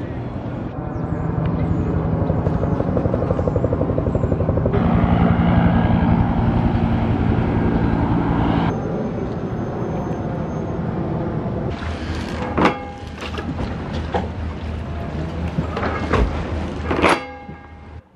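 Helicopter rotor chopping steadily and fairly loudly, a fast, even pulsing with a low drone, over a firefighting water drop. Near the end a few sharp knocks break in.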